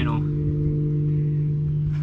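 A steady low hum with a couple of fainter, higher overtones, like a motor or electrical equipment running.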